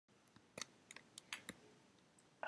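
Near silence with about half a dozen faint, short clicks over a second and a half.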